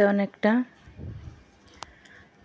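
A woman speaking briefly at the start, then quiet except for a faint low rumble and a single sharp click near the end.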